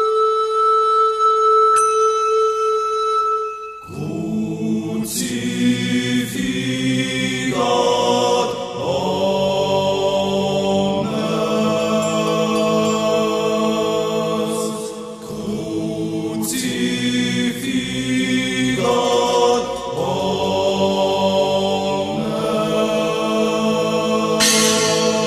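Music: a single held woodwind-like note, then from about four seconds in a choir singing slow, sustained chords.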